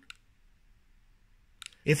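Button clicks on a Vandy Vape Swell box mod as the fire and plus buttons are pressed and held to lock it: one short click just after the start, then two quick clicks about a second and a half later.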